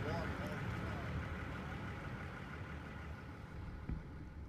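Low, steady rumble of a motorboat idling on open water, growing slowly quieter, with faint distant voices calling near the start.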